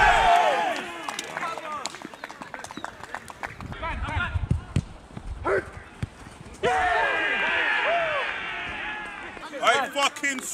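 Outdoor voices on a football pitch: a laugh fading at the start, then scattered light knocks and a few short calls. From a little past the middle, several men call out at once for about three seconds.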